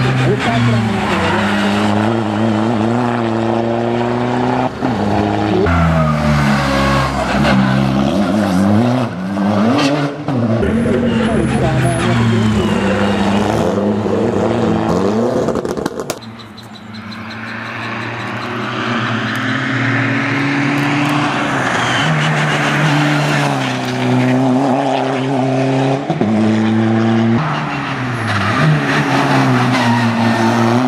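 Škoda Fabia RS turbodiesel rally car driven hard, its engine revving up and down repeatedly through gear changes and corners. The sound breaks off abruptly about halfway through, then the engine rises again and keeps revving up and down.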